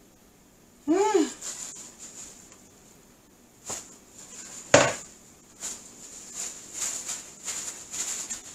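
Gloved hands patting raw pork chops dry with paper towels on a kitchen counter: scattered soft taps and paper rustles, with one sharper knock about halfway through. A short vocal sound that rises and falls in pitch comes about a second in, over a faint steady high whine.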